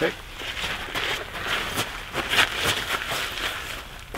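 Rustling clothing and shuffling footsteps on dirt, with scattered light clicks and crackles, as a shooter settles in behind a rifle resting on a rock barricade. No shot is fired.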